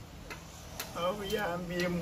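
A short pause with a few faint clicks, then a man's voice talking again from about a second in.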